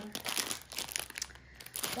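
Plastic cover film on a diamond painting canvas crinkling as it is handled, in short irregular crackles.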